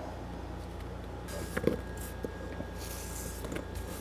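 Sliced yellow squash swept by hand off a wooden cutting board into a stainless steel bowl of flour: soft scraping and brushing with a few light clicks, over a steady low hum.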